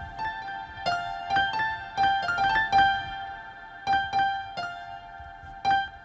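FL Studio's FL Keys software piano playing a slow melody of single notes and short chords, each note struck and then decaying, with a little gap in the middle. The dry piano is blended with B2 reverb returned from a mixer send.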